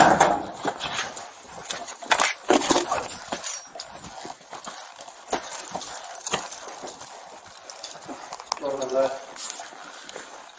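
Handling noise on a body-worn camera microphone: clothing and gear rub and knock against it, with scattered sharp clicks and clinks, thickest in the first few seconds. A brief muffled voice comes near the end.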